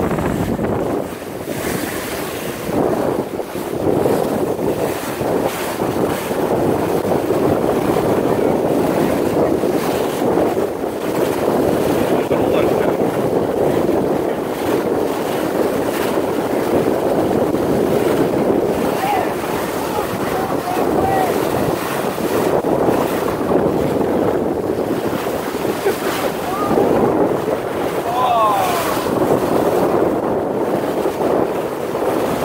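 Bow wave of a moving vessel rushing and splashing along the hull, with wind buffeting the microphone: a steady loud rush that swells and eases slightly.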